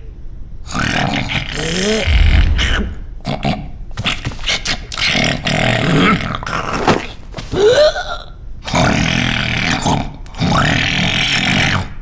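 A run of loud, raspy burp-like vocal noises from a cartoon character, in bursts of a second or two with short gaps and a few brief pitch slides; the loudest come about two seconds in and again about eight seconds in.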